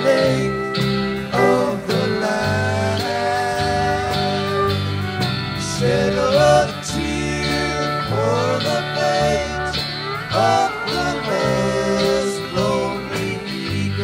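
Live country-rock band playing, heard from a soundboard recording: electric guitars, bass and drums with pedal steel guitar. Lead lines bend up in pitch every few seconds over a steady bass line.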